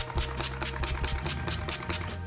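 Quick, even spritzes of a pump-spray bottle of facial mist sprayed at the face, over background music with a steady bass line.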